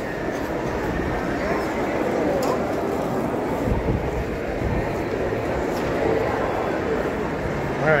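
Shopping-mall crowd hubbub: a steady murmur of many indistinct voices, with a few light footsteps on the tile floor.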